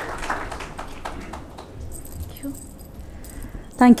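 Faint off-microphone chatter and room noise in a hall, then a woman begins speaking into the microphone just before the end.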